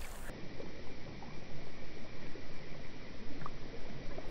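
Shallow river water running steadily, with a few faint small water sounds as a trout is let go from a landing net.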